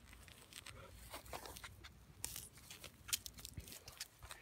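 A metal-detecting hand digger cutting into lawn turf and soil, making faint, irregular crunching and tearing scrapes.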